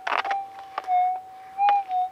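Gold-prospecting metal detector's steady threshold tone, swelling in loudness and wavering slightly in pitch about three times as the coil sweeps over a faint target. The target is a persistent signal that he checks is not a hot rock. A short scuff and a few light clicks come from the ground near the start.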